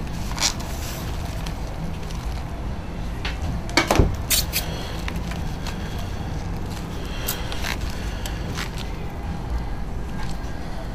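Steady low rumble with scattered short clicks and knocks. The loudest knock comes about four seconds in.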